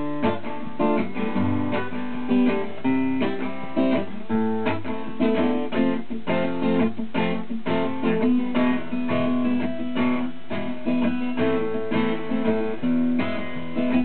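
Steel-string acoustic guitar strumming chords in a steady rhythm: the instrumental introduction of a song, with no voice yet.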